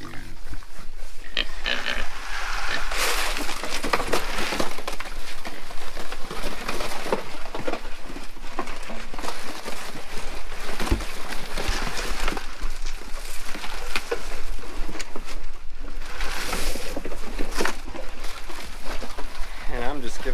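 A group of pigs crowding a feed pan and eating, grunting and squealing throughout, with two louder outbursts, one about three seconds in and one near the end.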